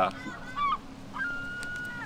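Gulls calling: a few short calls in the first second, then one longer call held at a steady pitch through the second half.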